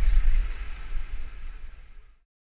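Wind buffeting the microphone of a helmet-mounted action camera on a moving bicycle: a loud, uneven low rumble with a thin hiss of road noise above it, fading out near the end.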